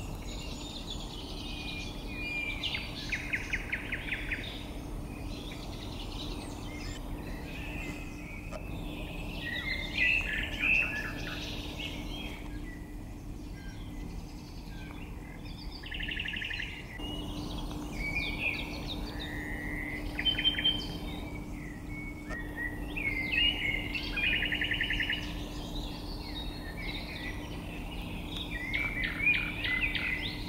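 Woodland songbirds singing in short repeated phrases, several of them ending in rapid trills, over a faint steady low hum.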